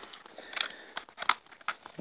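Kingston USB flash drive being pushed into a laptop's USB port: a handful of small, sharp clicks and scrapes as the metal connector goes in.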